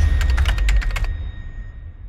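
End of a logo intro sound effect: a quick run of about eight keyboard-typing clicks in the first second over a deep low rumble, then the whole sound fades away.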